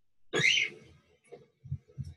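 A woman's short, forceful breathy vocal sound, like a sharp exhale, during exercise. It comes about half a second in, followed by a few faint soft knocks.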